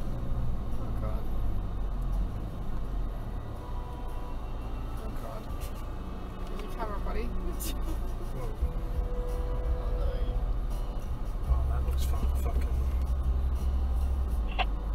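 A 2012 Toyota Prado KDJ150's turbo-diesel engine heard from inside the cabin, pulling through soft sand in low range as a steady low drone. It grows louder about eleven and a half seconds in.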